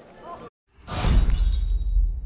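Glass-shattering sound effect bursting in about a second in, with crackling fragments and a deep bass rumble underneath that carries on: the logo sting of a video's closing end card.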